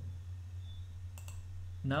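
A computer mouse clicking twice in quick succession, over a steady low electrical hum.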